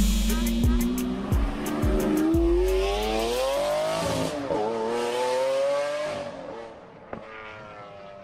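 Car engine revving sound effect: the engine note climbs steadily for about four seconds, dips briefly and climbs again, then fades away about seven seconds in.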